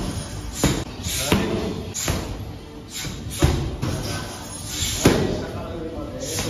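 Kickboxing strikes slapping into padded mitts held by a trainer: about six sharp smacks at an uneven pace, with a longer gap before the last one.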